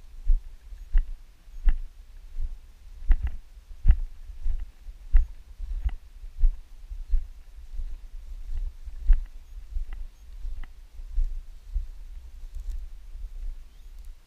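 Footsteps through grass at a steady walking pace, about three steps every two seconds, each landing as a dull thump, over a low steady rumble.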